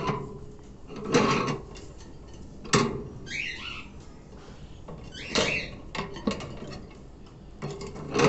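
Wire cage bars rattling and clicking in several separate bursts as a sun conure climbs them, with a short bird chirp about three seconds in.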